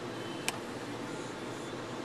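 Steady road and cabin noise inside a Mitsubishi Outlander Sport at highway speed, with a single sharp click about half a second in as the overhead sunroof switch is pressed.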